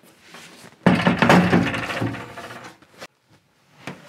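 Knocking, rubbing and creaking of an old wooden cabinet's panels and door as someone shifts about inside it. A sudden knock about a second in is followed by about a second of scraping, then two sharp clicks near the end.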